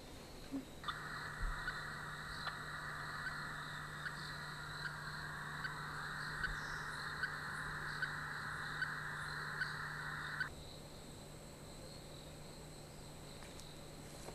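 Insects chirring steadily in forest. A louder steady buzz starts about a second in and cuts off suddenly after about ten seconds, with faint regular ticks under it.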